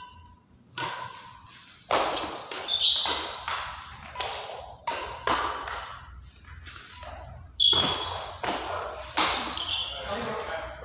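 Badminton rackets striking the shuttlecock back and forth in a rally, a sharp hit about every second, each echoing in a large hall.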